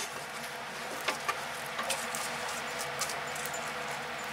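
Light scattered taps and rustles of a rubber toy frog being moved by hand on a wooden surface, over a steady background hiss.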